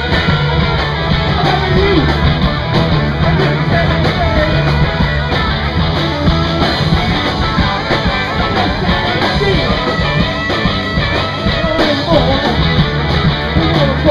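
Live punk rock band playing loud, with electric guitar and a singer's vocals over the full band.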